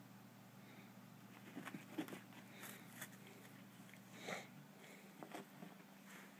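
Faint scattered soft taps and rustles of a cat pawing, grabbing and biting a catnip toy on carpet, the sharpest about two seconds in and another just past four seconds, over a low steady hum.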